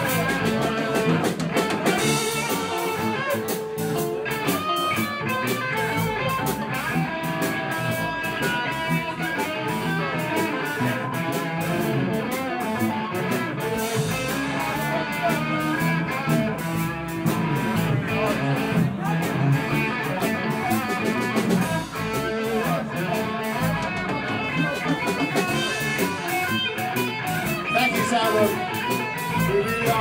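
Live blues band playing an instrumental break between verses: an electric guitar lead over bass guitar and drum kit.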